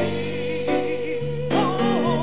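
Gospel praise team singing into microphones. A voice holds one long note, then a new phrase begins about one and a half seconds in.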